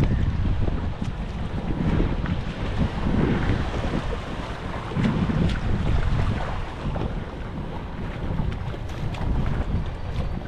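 Wind buffeting the microphone, with water washing around a kayak's hull as it is towed through very shallow water.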